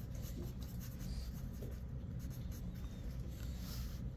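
Faint scratching of handwriting strokes over a steady low room rumble.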